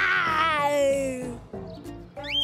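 A cartoon child's voice giving one long, loud wail that falls in pitch, a mock monster howl for an 'abominable snowman', over light background music.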